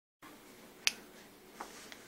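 Two short sharp clicks in a quiet room: a loud one about a second in and a fainter one about half a second later, over faint room hiss.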